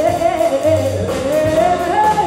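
A woman singing a jazz melody into a microphone, backed by grand piano, upright double bass and drum kit, her sung line gliding upward through the phrase over plucked bass notes.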